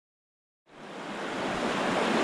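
Rushing water of a shallow creek riffle pouring over rocks, fading in from silence about two-thirds of a second in and rising to a steady rush.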